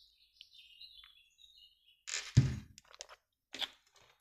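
Small handling noises of card decks on a wooden table: a few faint high chirps and rustles at first, then a soft thump about two seconds in, followed by a couple of light clicks.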